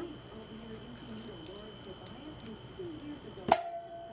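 Multi-wire soap loaf cutter pushed down through a soap loaf; about three and a half seconds in, the wire frame hits its stop with one sharp clang and the wires ring on briefly with a clear tone.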